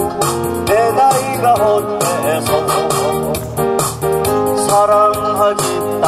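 A man singing a Korean trot song into a microphone over an amplified backing track with keyboard and a steady beat.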